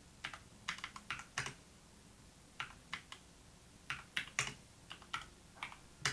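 Typing on a computer keyboard: sharp key clicks in short irregular runs, with brief pauses between.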